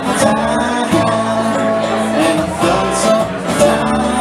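Live bluegrass band playing: upright bass, banjo and acoustic guitar, with a male voice singing a line at the start.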